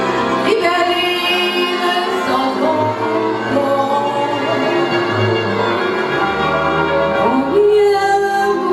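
A woman singing live into a microphone, accompanied by a small string band of violins, double bass and cimbalom. Her held notes bend and waver over the bowed violin, and near the end a note slides upward.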